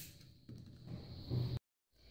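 Faint handling noise of hands holding a Motorola StarTAC flip phone, with a soft click about half a second in. The sound cuts to dead silence near the end.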